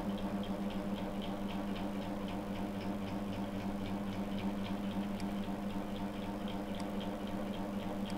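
A steady low electrical hum with a faint, even ticking, about four ticks a second.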